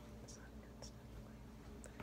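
Near silence: faint room tone with a few soft, brief clicks.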